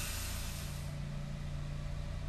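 Steady low hum of a car idling with an even hiss, heard from inside the cabin. A brief rush of noise comes right at the start.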